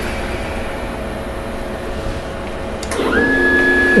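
CNC mill driven by an Acorn stepper controller, paused: a steady mechanical hum and hiss. About three seconds in, a steady high whine sets in from the stepper motors as the program resumes and the axes move again.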